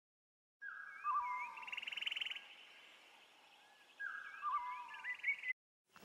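Birds calling: sliding whistled notes and a quick rattling trill, in two similar phrases, the second starting about four seconds in.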